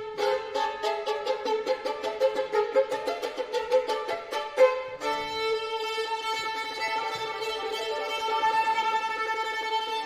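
Solo violin playing unaccompanied: a run of rapid, short, detached notes with a sharp accent near the end of it, then, about halfway through, long sustained bowed notes.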